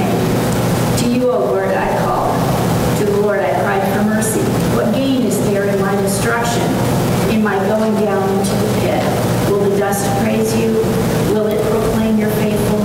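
Speech only: a woman reading aloud steadily.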